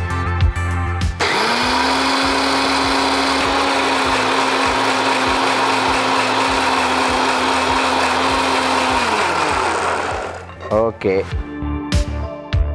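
An electric mixer grinder (small-jar kitchen blender) starts about a second in and runs steadily at full speed, wet-grinding yellow grains into a smooth batter. Near the end it is switched off and winds down with a falling whine. Background music with a beat plays before it starts and after it stops.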